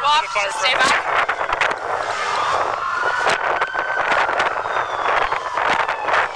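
Emergency vehicle siren sounding one slow wail that rises in pitch and then falls, over street noise.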